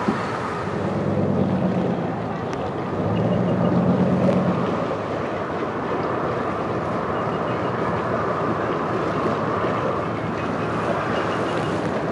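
Boat engine running, with a louder low hum for about a second near the start and again a few seconds in, over a steady background of engine and wind noise.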